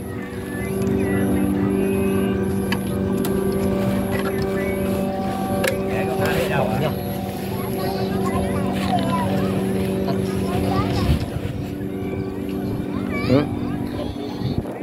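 Several Vietnamese kite flutes (sáo diều) droning in the wind, a steady chord of held notes at different pitches; the lowest note drops out about eleven seconds in.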